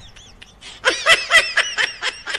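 A person laughing in a quick run of short, high-pitched bursts, starting about a second in.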